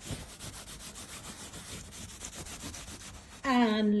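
A smooth black touchstone (kasauti) rubbed back and forth in quick strokes on the gold zari woven into a silk-cotton saree, to test whether the zari is real gold. The rubbing stops about three and a half seconds in, when a woman starts speaking.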